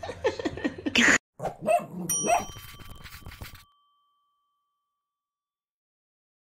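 A baby whimpering and crying, cut off about a second in. A short sound effect follows: dog-like yelps and a bell ding whose ring fades over about a second. Silence from a little past halfway.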